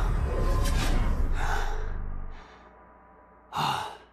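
A deep rumbling magic-power sound effect with score, fading out about halfway through, then a man's short sigh near the end.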